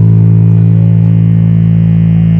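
Electric bass guitar played through a bass cabinet, heard close to the cab, holding one low sustained note steadily and loudly.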